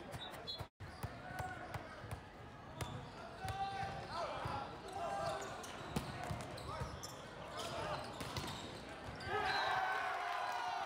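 Indoor volleyball rally: players shouting calls, with a sharp slap of a hand hitting the ball about six seconds in. The shouting grows louder near the end.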